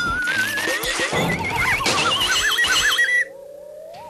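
Electronic power-up sound effect of a computer starting: warbling tones that climb steadily in pitch over a crackling, clattering layer. Just after three seconds the clatter cuts off and a quieter, lower warbling tone goes on rising.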